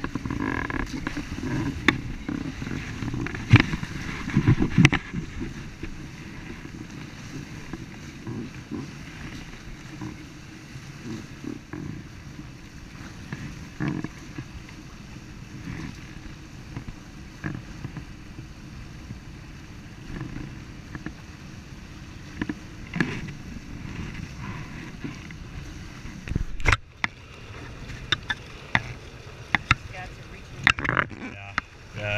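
Wind buffeting the on-board camera microphone over water rushing and splashing along the hulls of a Prindle 18-2 catamaran sailing at speed. Irregular sharp slaps and knocks come through it, the loudest a few seconds in and near the end.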